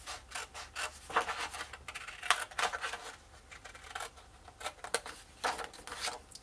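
Blue-handled scissors snipping through a sheet of white paper in a quick, unevenly spaced series of short cuts, trimming away strips along scored fold lines.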